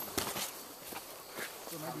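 Footsteps on dry bamboo leaf litter, several short steps at an uneven pace.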